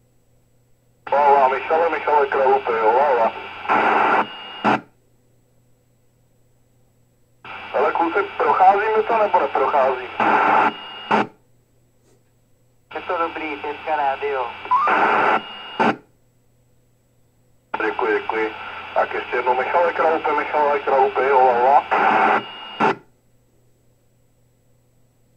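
Other CB stations' voices coming through a K-PO DX 5000 CB radio's speaker on FM, four transmissions of a few seconds each. Each ends abruptly with a short click as the signal drops and the squelch closes, leaving only a faint low hum in the gaps.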